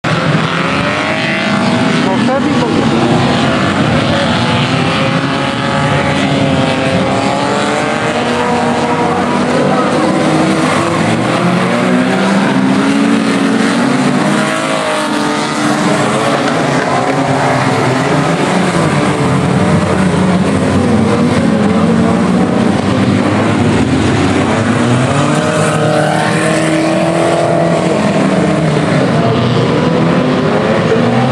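Several banger-racing cars' engines revving and running together on the oval track, their pitches rising and falling as they accelerate and ease off.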